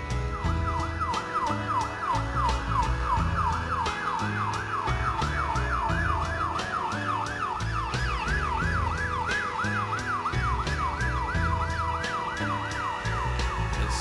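Emergency vehicle siren in a fast yelp, about three quick rising-and-falling sweeps a second, starting just after the beginning and stopping near the end. Under it runs music with a steady beat and bass.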